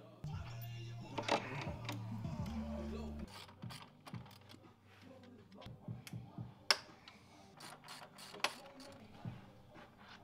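A hand ratchet clicking and metal tools and bolts clinking as bolts are undone on a snowmobile's front suspension. A steady whirr runs for about the first three seconds, and two sharper metallic clinks stand out in the second half.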